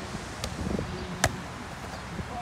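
A volleyball struck by players' hands during a rally: a faint hit about half a second in, then a sharp, loud smack just past a second.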